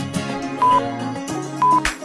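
Background music with a short, high beep repeated about once a second, twice here, each beep louder than the music: a countdown-timer sound effect.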